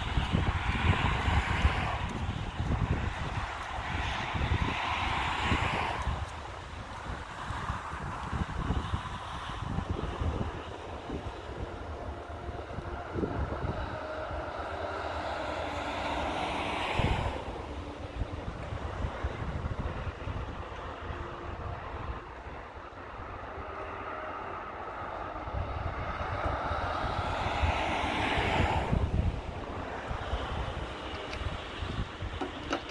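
Street traffic outdoors: several vehicles pass, each swelling up and fading away, the clearest about sixteen seconds in and again near the end. Wind buffets the microphone throughout with a low rumble.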